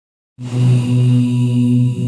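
A male qari beginning a Quran recitation (tilawat), chanting the opening word "Bismillah" in a slow, melodic voice with long held notes. It starts about half a second in.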